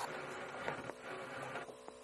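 Faint steady electrical hum and hiss with a couple of soft clicks, as the car radio is switched from AM to FM.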